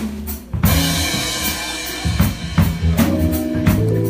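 Live band's drum kit playing a break: drum hits with a cymbal crash about half a second in that rings on. The rest of the band comes back in with held notes near the end.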